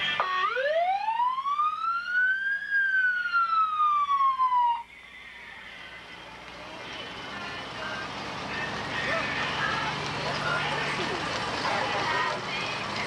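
A fire truck's siren gives one wail, rising for about two and a half seconds and then falling, and cuts off suddenly about five seconds in. The noise of the roadside crowd and passing parade vehicles then follows.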